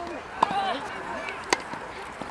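Two sharp pops of a tennis ball being struck, about a second apart, with people talking in the background.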